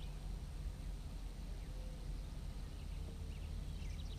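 Faint, steady low hum of background noise with no distinct sound event.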